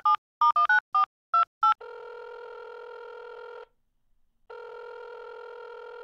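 Push-button telephone keypad beeping through a quick run of about eight dialling tones. Then the line sounds two long ringing tones with a short gap between them: the call is ringing out.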